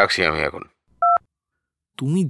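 A single telephone keypad (DTMF) tone: one short two-note beep, about halfway through, just after a few words of speech.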